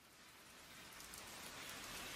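Recorded rain sound effect fading in steadily from silence: an even hiss with scattered faint drop ticks.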